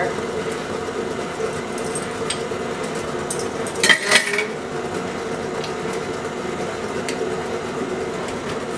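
KitchenAid stand mixer running steadily, its motor humming as it beats wet batter in the steel bowl. About four seconds in, a brief clink of something set down on the countertop.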